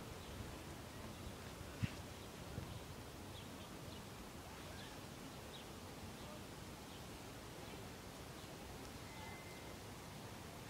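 Faint outdoor background noise with a few faint short high chirps, typical of distant birds in trees, and a single sharp knock about two seconds in.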